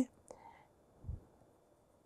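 A pause in a man's lecture: near silence, with the tail of his last word at the start and a faint soft knock about a second in.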